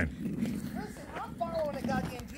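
A man's voice talking faintly at a distance, over footsteps on a paved sidewalk.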